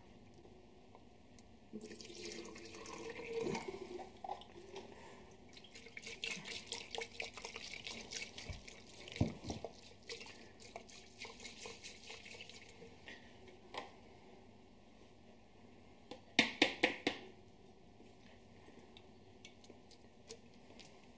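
Hot water from an electric kettle trickling and dripping as an emptied steel tin of malt extract is rinsed out over a plastic fermenter, with small clinks of handling. About three-quarters of the way through comes a quick run of four sharp knocks.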